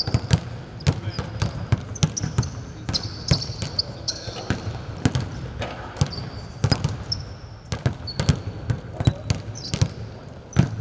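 Several basketballs bouncing on a hardwood court in a large empty arena, a steady irregular patter of thuds, with short high sneaker squeaks in between.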